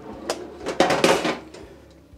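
Kitchenware clattering on a stovetop cooling rack as tall cups are set onto it: a light knock, then a clatter and scrape lasting about a second.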